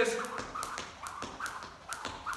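Skipping rope slapping a hard floor on each turn, with single-foot landings, in a steady rhythm of about three light taps a second.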